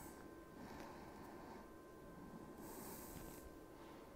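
Near silence: room tone with a faint, steady high tone and a brief soft hiss about three seconds in.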